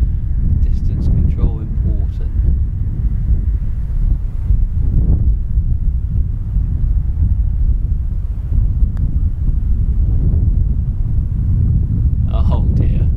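Wind buffeting the microphone: a steady low rumble throughout. About nine seconds in comes a single light click, a putter striking a golf ball.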